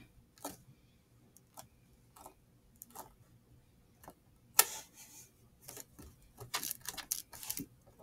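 Faint handling noise of fingers pressing and smoothing a rolled beeswax-sheet candle: scattered small clicks and rustles, with one sharper tap about halfway through and a quick run of clicks after it.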